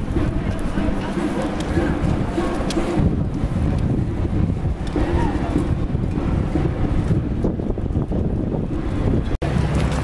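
Wind buffeting the camera's microphone in a steady low rumble, with faint voices of people in the street underneath. The sound cuts out for an instant near the end.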